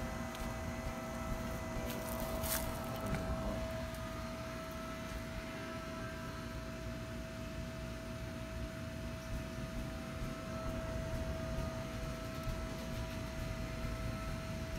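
Faint steady mechanical hum with one constant whining tone over a low rumble, and a light click about two and a half seconds in.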